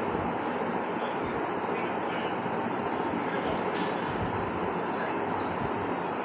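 Steady hiss-like noise that stays even throughout, with no distinct events.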